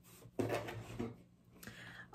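Items being handled and lifted out of a cardboard box: a brief rustle and knock about half a second in, then quieter shuffling.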